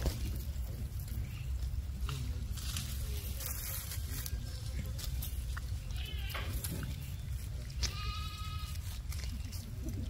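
Vervet monkeys calling: a faint short call about six seconds in and a clearer, high-pitched call of about half a second near eight seconds in, over a low steady rumble and scattered light rustles.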